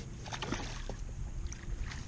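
Wind rumbling on the microphone over the water, with a few faint splashes as a crappie is dipped out with a landing net beside the boat.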